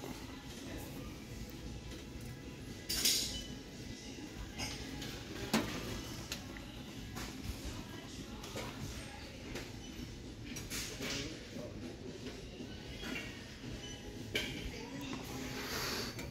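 Low shop background with a few short clinks and knocks of glass vases being picked up and set back on a store shelf.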